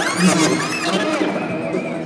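The battle music breaks off suddenly, leaving shouting voices and crowd noise in a large hall, fading towards the end.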